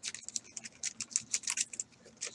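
Plastic packaging of an Ultra Pro One-Touch magnetic card holder being handled and crinkled, a quick irregular run of small sharp crackles.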